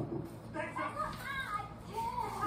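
A high-pitched voice talking indistinctly in the room, starting about half a second in.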